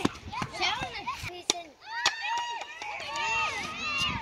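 Children's voices shouting and chattering, high-pitched, with a few sharp clicks in between.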